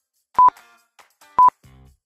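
Countdown timer sound effect: two short, high beeps about a second apart, with faint background music coming in near the end.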